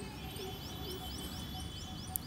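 Faint background bird calls: a quick, even series of short rising chirps, about five a second, over a faint steady high-pitched whine.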